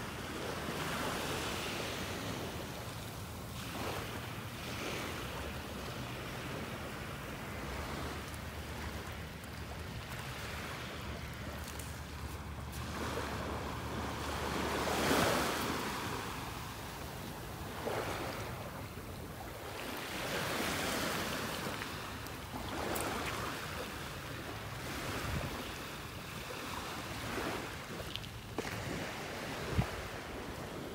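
Small Gulf waves washing gently on the shore, the wash swelling and fading every few seconds, with some wind on the microphone.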